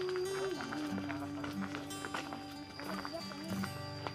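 Background music: a long held melody note that steps down in pitch about half a second in, over a stepping bass line with light percussion.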